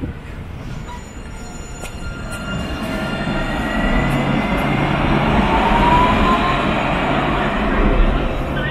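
Nottingham Express Transit light-rail tram running past close by, its rolling noise growing louder over the first six seconds, with a thin rising whine.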